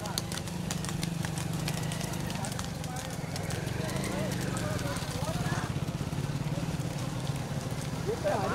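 Motorcycle engine running steadily at low speed close by, with bulls' hooves clopping on the road in the first second or so and faint shouting voices.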